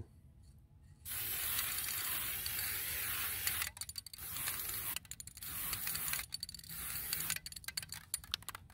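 Rust-Oleum NeverWet Step 2 aerosol can spraying a hydrophobic top coat onto a car's front bumper. It starts about a second in with one long hiss of a few seconds, then comes in several shorter sprays with brief pauses, the last ones short near the end.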